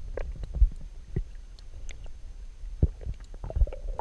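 Muffled underwater sound picked up by a submerged camera: a low rumble of moving water with scattered soft knocks and pops at irregular times.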